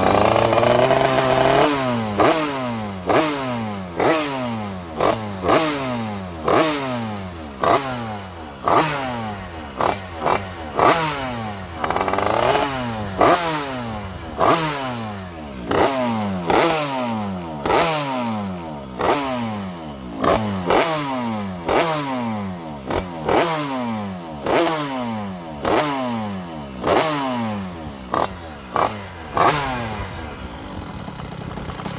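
Derbi Senda's two-stroke Minarelli AM6 engine, bored to about 80 cc with a Top Performance maxi kit and running through an expansion-chamber exhaust, being blipped on the throttle while warm. It is held high for a moment at first, then revved in quick blips about once a second, each rising sharply and falling back toward idle.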